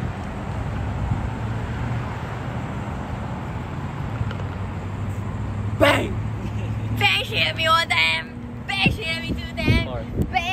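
Steady low hum of a motor vehicle engine running on the street beside the course, over road traffic. About six seconds in comes a short shout, followed by high, wavering vocal cries to the end.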